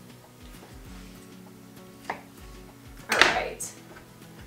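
A kitchen knife cutting through Polish sausage on a cutting board, with a sharp knock of the blade on the board about two seconds in. Near the end, a louder clatter as the cut sausage pieces go into a stainless steel pot.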